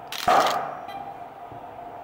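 A shot fired on the studio set: the Hasselblad camera's shutter and the broncolor studio flashes going off together in one sharp burst that dies away within about half a second, over a steady hum.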